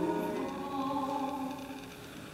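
A solo soprano sings with Renaissance lute accompaniment, holding a sustained note that dies away near the end.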